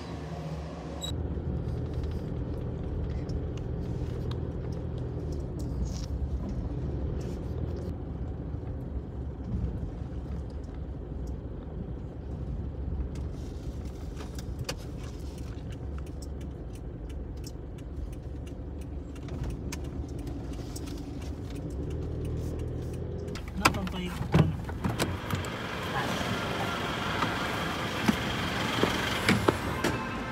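Car interior noise while driving: a steady low rumble of road and engine. Near the end it gives way to a few sharp knocks and a brighter, busier sound with clicks.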